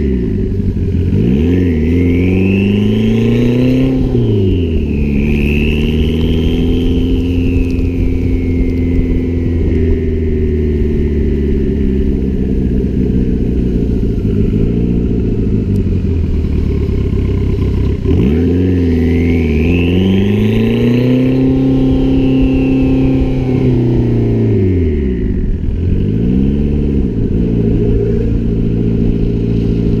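Mitsubishi Eclipse (DSM) engine, heard from low beside the front wheel, accelerating twice with revs rising then dropping at a gear shift, a high whine climbing along with the revs each time. Between the pulls it cruises at steady revs, easing off briefly twice.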